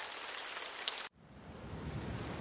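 Rain sound-effect loops previewing in GarageBand's loop browser: a steady hiss of rain stops abruptly about a second in, and a heavier rain loop with a low rumble starts and builds, the loop called Rain Heavy Thunder.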